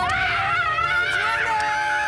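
A woman screaming with joy: one long, high-pitched scream held unbroken.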